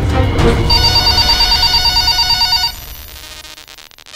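Title-sequence music with an electronic telephone ring effect: a trilling ring comes in about a second in and cuts off suddenly past the middle, leaving a quiet fading tail.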